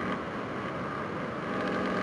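Steady low background noise, a hiss with a faint hum, with no distinct sound events.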